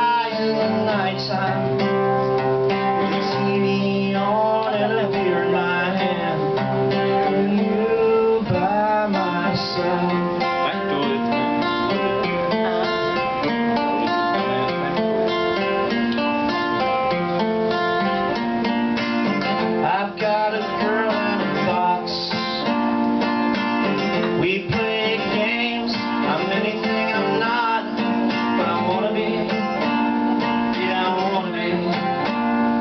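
Acoustic guitar strummed steadily through an instrumental passage of a song, its chords ringing on without a break.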